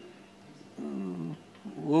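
A man's voice: one short, drawn-out vocal sound with a falling pitch about a second in, between pauses, then speech starting again at the end.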